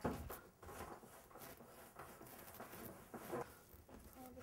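Quiet room tone with a few faint rustles and small clicks.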